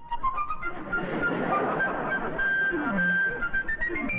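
Cartoon soundtrack march music led by a shrill fife, its melody climbing in steps over a busy accompaniment.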